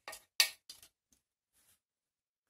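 Metal palette knife scraping acrylic paint, three quick strokes in the first second with the second the loudest, then a faint tick.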